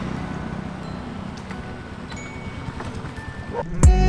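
Motorbike engine idling with a low, even rumble. Near the end a sharp falling swoosh leads into loud music.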